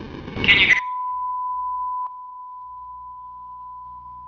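A short loud burst of sound cuts off, leaving a steady single test tone, like a broadcast feed dropping out; the tone drops in level about two seconds in. It is the sign of the satellite video feed losing its signal.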